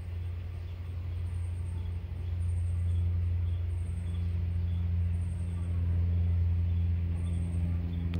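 A steady low motor hum, a little louder from about two seconds in, with faint high-pitched chirps repeating every second or so.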